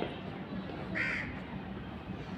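A single short, harsh bird call about a second in, over a steady low background hum.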